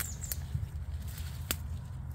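Steady low rumble of wind on the microphone, with a few light clicks of footsteps on dry stems and mulch.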